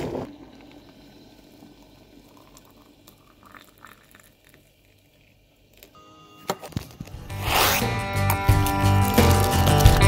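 An electric kettle clicks off at the boil right at the start. A few quiet seconds of faint handling sounds and a couple of sharp clicks follow, then acoustic guitar music starts about seven and a half seconds in and carries on.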